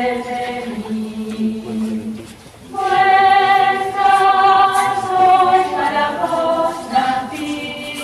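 Choir singing a slow hymn in long held notes, apparently unaccompanied; the singing dips briefly about two and a half seconds in, then a new, louder phrase begins.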